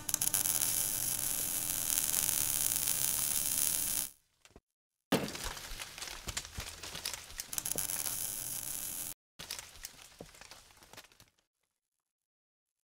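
Logo animation sound effect: a steady rushing hiss for about four seconds, then, after a short break, a sudden hit followed by dense crackling debris that stops briefly and trails off near the end.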